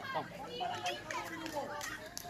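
Children playing, several voices calling and chattering over one another.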